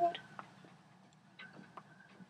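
A spoken word trailing off, then quiet room tone with a few faint, scattered clicks.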